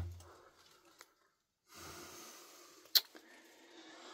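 Quiet, with soft faint rustling and one sharp click about three seconds in, and a fainter tick about a second in.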